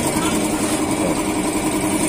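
An engine running steadily at idle, a constant unchanging hum.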